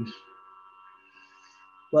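A pause in a man's talk, filled only by a faint steady ringing of several high pitches held together. His voice comes back near the end.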